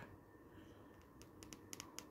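Near silence, then a few faint small plastic clicks in the second half as a PVC figure's head is pushed onto its stiff neck joint.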